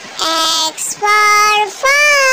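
A child's voice in a drawn-out, sing-song recitation: three long syllables, each a little higher than the last, the third still held at the end.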